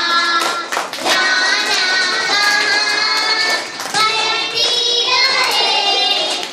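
Two young girls singing a song together into a microphone, their high children's voices carrying a simple melody with short breaths between phrases.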